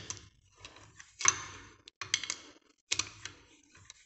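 Steel hand tools clicking against a Honda motorcycle engine's cylinder head as its fasteners are snugged down lightly, before final torquing: a few sharp, irregular metallic clicks, some in quick clusters.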